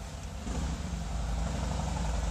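A steady low motor hum that grows louder about half a second in.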